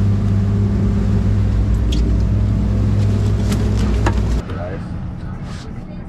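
A boat's engines running with a steady low hum, a few sharp knocks over it. About four seconds in the hum cuts off abruptly, leaving a quieter background rumble with brief voices.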